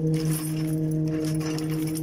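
Bicycle rattling as it rolls along, with light metallic jangling and clicks over a steady low hum.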